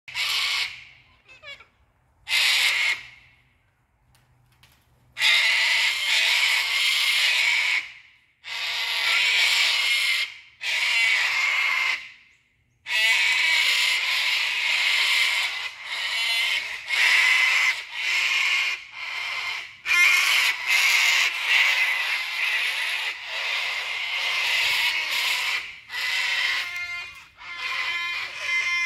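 A flock of sulphur-crested cockatoos screeching harshly in alarm, mobbing a monitor lizard near their nest tree. It opens with a few short calls and a brief lull, then long screeches follow one after another, almost without a break in the second half.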